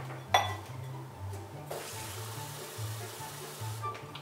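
A kitchen tap runs water into a drinking glass for about two seconds, starting a little before halfway and stopping just before the end. Earlier there is a single sharp knock as the glass is taken from the cupboard. Background music with a low bass line plays underneath.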